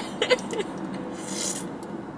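A few short bursts of muffled laughter at the start, then steady road noise inside a moving car's cabin, with a brief soft scrape about one and a half seconds in.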